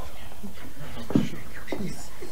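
Voices whispering indistinctly, with a brief sharp sound about a second in.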